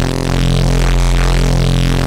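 Xfer Serum software synthesizer holding one low bass note from a wavetable built from an imported PNG image of a screwdriver, with the image's brightness mapped to wavetable amplitude. The note is steady and loud at the bottom, while its upper overtones keep shifting and wobbling.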